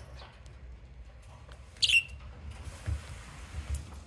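Budgerigar giving a harsh, rasping 'jaa-jaa' call: a short sharp squawk about two seconds in, the loudest moment, then a longer noisy rasp. The call closely mimics a grey starling's alarm call and seems to be newly learned.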